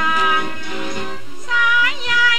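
A woman singing a Thai song with instrumental accompaniment: a held note, then a short phrase that rises in pitch near the end.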